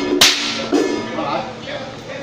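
A braided rope ritual whip cracked once, a sharp crack about a quarter of a second in with a short ring of echo after it. The music that was playing breaks off at the crack.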